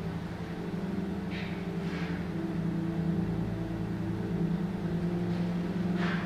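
Steady low droning hum made of several held tones, shifting slightly about three seconds in, with a few soft hissing swishes over it.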